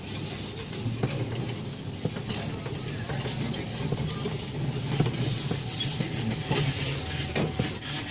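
Hand-pulled rickshaw rolling along a paved path: a steady rumble from the wheels with frequent small clicks and knocks from the wheels and wooden cart.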